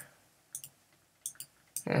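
A few faint, short clicks spread over two seconds as a word is handwritten on a computer sketchpad, with a brief spoken "eh" near the end.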